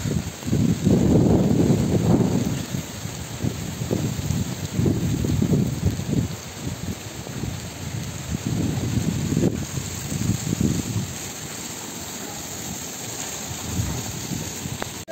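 Wind buffeting the phone microphone in gusts, over a steady hiss of monsoon rain.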